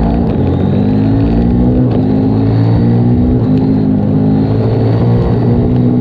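Husqvarna Norden 901's 889 cc parallel-twin engine pulling hard as the bike accelerates on the road, its pitch shifting in steps.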